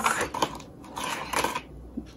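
Silver Pandora charm bracelet being handled, its dangle charms jingling and clinking against the chain in a couple of short bursts, one at the start and another about a second in.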